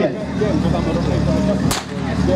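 A single sharp crack near the end, the starting shot for a firefighting team's run, over a steady low engine hum and voices.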